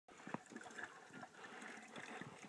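Faint running water as water is pumped, with a few small clicks.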